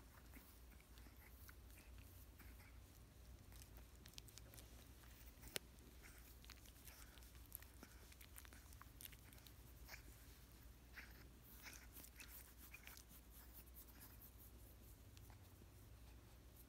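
Near silence with faint rustling and small scattered mouth clicks from a Chihuahua puppy squirming and nibbling a finger while being rubbed on a blanket; one sharper click about five and a half seconds in.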